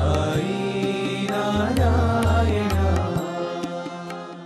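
Devotional chant-style music with a pulsing low beat under sustained pitched lines; the beat drops out about three seconds in and the music fades toward the end.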